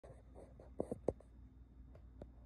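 Light scratchy rubbing with three soft taps in quick succession a little under a second in, the last one the loudest.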